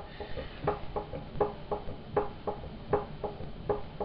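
Light ticks or knocks repeating about three times a second, a little unevenly, from the potter's wheel as it turns during throwing.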